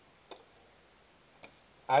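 Quiet pause in a video call with two faint short clicks about a second apart, then a man's voice starts speaking near the end.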